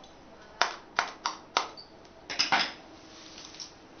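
Scissor points jabbing holes through a thin plastic container lid, making ventilation holes: four sharp clicks a little under a second apart, then two or three more in quick succession near the middle.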